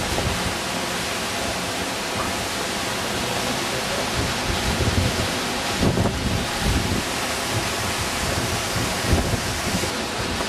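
Steady rushing of water at a mill waterwheel, with wind buffeting the microphone in uneven low rumbles.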